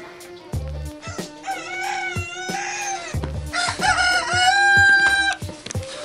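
Rooster crowing twice, the second crow long and held steady at the end, over background music with a beat.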